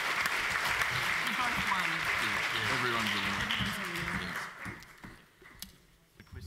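An audience applauding, the clapping dying away about four and a half seconds in, with voices talking under it.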